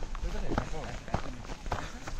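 Indistinct talking, with footsteps landing about twice a second.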